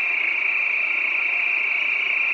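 Oxy-acetylene torch flame with an ASCO #3 tip hissing steadily, high-pitched and unchanging, as it heats a condenser coil's copper tube while silver solder is brazed into the leak.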